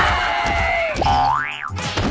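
Cartoon sound effects over background music: a held whistling tone with a whoosh for about a second, then a quick whistle glide that rises and falls back, like a boing. A sharp thud lands near the end.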